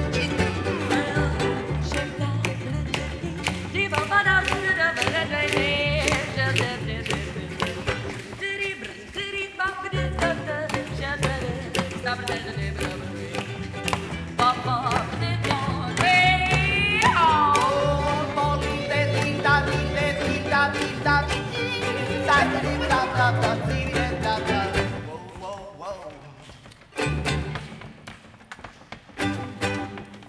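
Live acoustic string band: strummed ukuleles over a plucked upright double bass and a lap-played resonator guitar, with singing and a long sliding high note about sixteen seconds in. The music thins out about 25 seconds in and ends on a few last, quieter notes.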